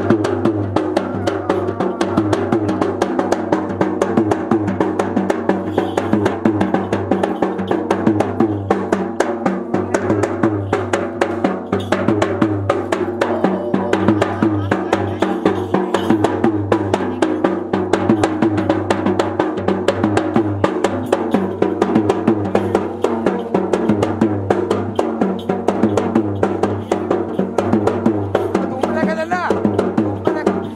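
Sri Lankan ritual drumming in fast, continuous strokes over a steady drone, with a wavering melody line above it.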